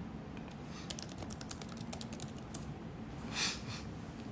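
Typing on a keyboard: a quick run of key clicks, followed by a short, louder rustle near the end.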